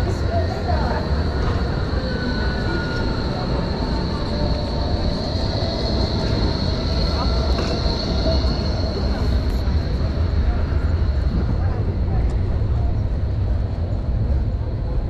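Electric street tram rolling past on its rails, with a steady high whine that is strongest midway and then fades, over a low rumble of city noise.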